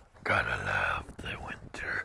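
A person's voice whispering in two short stretches, with no words made out; the pitch dips and rises once near the middle of the second stretch.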